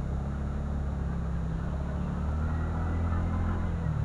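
TVS NTorq 125 Race XP scooter's single-cylinder engine running under throttle as the scooter picks up speed, a steady low hum mixed with road noise that grows slightly louder.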